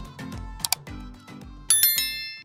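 Outro music with a low bass line, under the sound effects of a subscribe-button animation: a quick double click a little before the middle, then a bright bell chime near the end that rings on.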